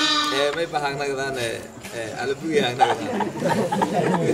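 A man laughing loudly for the first second and a half, then a small group of men laughing and talking over each other.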